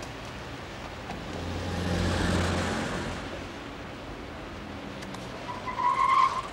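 City street traffic, with a car passing: its engine grows louder to a peak about two seconds in, then fades away. A brief high-pitched tone starts at the very end.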